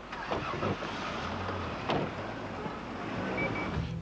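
Street traffic noise with a car engine running close by, and a single sharp knock about two seconds in.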